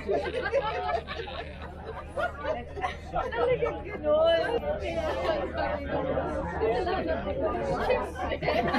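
Several people chatting and talking over one another around a dinner table, over a steady low hum.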